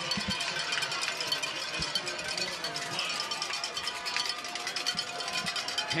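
Outdoor football stadium ambience: faint music playing with scattered distant voices over a steady background hiss.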